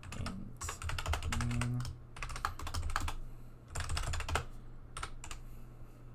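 Fast typing on a computer keyboard, keystrokes clicking in several quick runs with short pauses between them.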